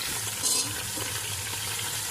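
Raw jackfruit pieces frying in hot mustard oil in a pressure cooker: a steady sizzle, with a brief sharper sound about half a second in.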